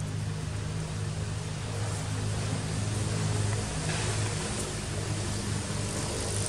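A motor running steadily: a low hum with a hiss over it, slightly louder around the middle.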